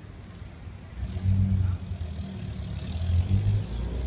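A motor vehicle driving past: a low engine rumble comes in about a second in and holds, with a faint hiss of tyre noise swelling and fading over it.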